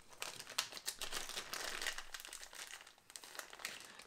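Close crinkling and crackling as fingers pull and tease apart a pinch of synthetic Ice Dub dubbing, a dense string of fine crackles that dies away about three seconds in.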